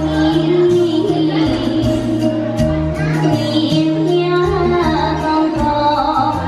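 A woman singing into a microphone through a PA, over amplified backing music with held bass notes and a steady drum beat.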